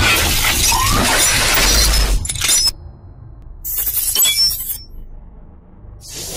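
Cinematic logo-reveal sound effects: a loud shattering crash that fades out about two and a half seconds in, then a brief burst of high glassy tinkling a little later.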